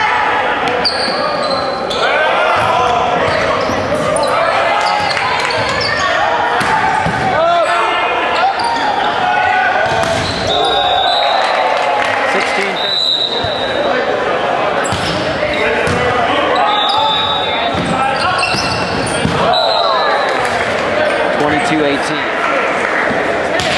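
Volleyball rally in a gymnasium: players and onlookers shouting and calling over one another, echoing in the hall, with sharp hits of the ball and several short, high sneaker squeaks on the hardwood court.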